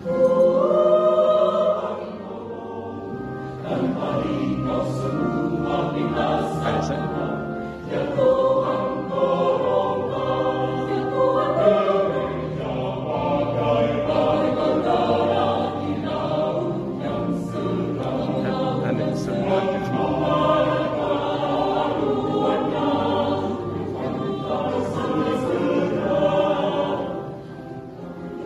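Mixed choir of men's and women's voices singing a church choral piece. It comes in loud at once, eases briefly after about two seconds, and the phrase ends just before the close.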